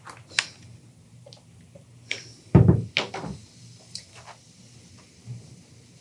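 Hands handling and pinning a folded denim hem on a padded pressing board: scattered small clicks and rustles, with one louder dull thump about two and a half seconds in.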